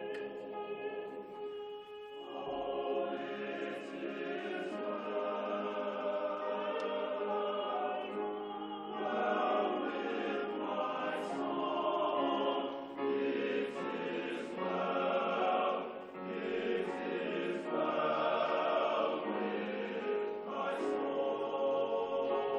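An all-male choir singing in sustained chords, in long phrases that swell louder about nine seconds in.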